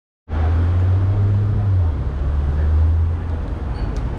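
A vehicle engine runs close by as a low, steady drone over city street traffic noise. The drone drops in pitch about two seconds in and fades a little after three seconds.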